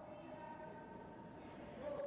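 Curling brooms sweeping the ice ahead of a sliding stone, over a steady hum.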